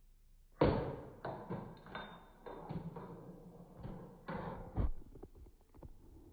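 Sound from a video playing through a tablet's small speaker: a string of short bursts with thumps and music-like sounds, stopping suddenly about five seconds in, followed by a few faint clicks.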